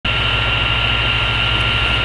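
Steady high-pitched feedback whine over a low hum and hiss, unchanging throughout.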